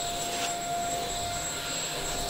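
Rowenta X-Force 11.60 cordless stick vacuum running steadily with a high motor whine as it is pushed across a carpet.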